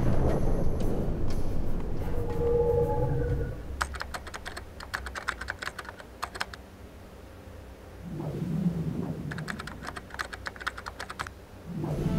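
Two runs of rapid key-typing clicks, each about two seconds long: one about four seconds in and one near the end. Low swelling rumbles come before each run.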